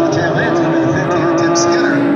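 A pack of Legends race cars running at racing speed, their Yamaha four-cylinder motorcycle engines overlapping in a steady drone of several pitches.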